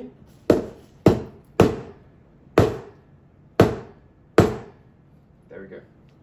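An espresso portafilter knocked against the bar of a metal knock box six times, sharp separate knocks at an uneven pace, to empty out the spent coffee puck.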